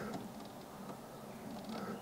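Faint, steady background hiss in a car cabin, with no sound from the car stereo's speakers even though its volume is turned up: the radio has no aerial, so nothing comes through.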